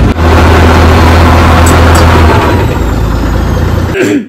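A boat's engine running loudly and steadily, heard close from inside the cabin, with a deep constant hum under a noisy rumble.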